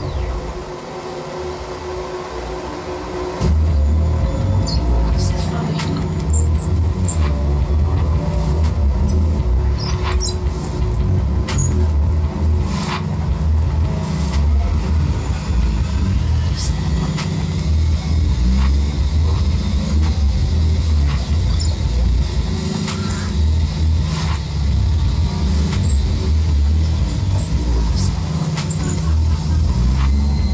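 Live experimental electronic pop music: a heavy, pulsing deep bass thins out at the start and comes back in hard about three and a half seconds in, with scattered glitchy high chirps and squeals over it.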